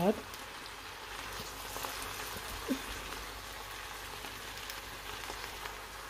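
Stir-fry noodles, vegetables and prawns sizzling steadily in a hot wok as they are tossed with a spatula.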